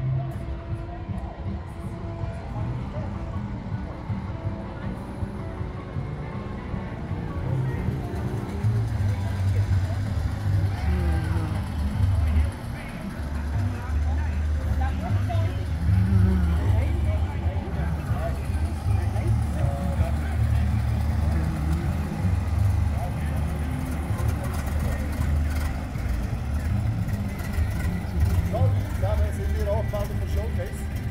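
Classic-car engines rumbling at low revs, swelling and fading as cars move about, with distant people's voices. Background music plays in the first several seconds.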